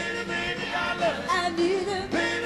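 Woman singing blues live with a band, her voice sliding and holding notes over the full band.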